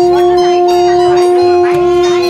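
A conch shell (shankh) blown in one long steady note, with women ululating (ulu-dhwani) over it in wavering high trills.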